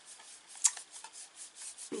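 Fingers rubbing and sliding a handheld oracle card, with faint scuffs and a sharper small tap about two-thirds of a second in.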